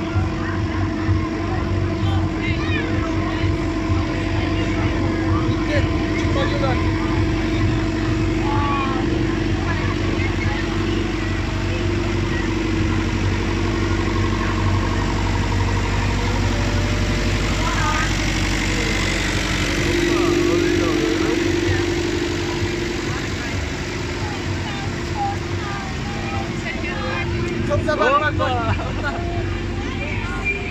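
Tractor engine running steadily at low revs as it pulls a parade float slowly past at close range, a little louder about two-thirds of the way through, with a crowd chattering around it.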